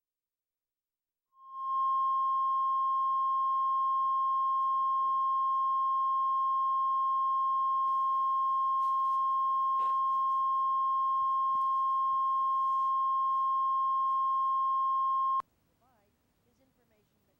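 Bars-and-tone test signal: a steady 1 kHz line-up tone, one unbroken pure pitch that comes in about a second in and cuts off suddenly near the end.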